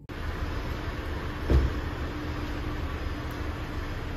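Steady low rumble and hiss of a car park around a rental car, with a faint steady hum, and one loud thump about a second and a half in.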